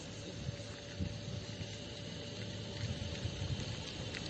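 Steady outdoor background noise: a low rumble with a faint, steady hum and no distinct events.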